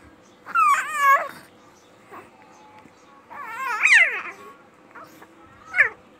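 Baby fussing in three high-pitched cries that waver in pitch: one about half a second in, a longer one around four seconds, and a short one near the end.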